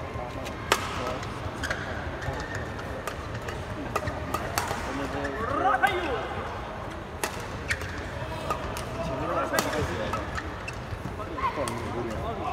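Badminton rackets striking the shuttlecock in a rally, a sharp crack every second or so, over a steady murmur of spectators' voices.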